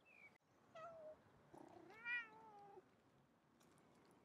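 Domestic cat meowing twice: a short meow about a second in, then a longer, louder meow that bends in pitch.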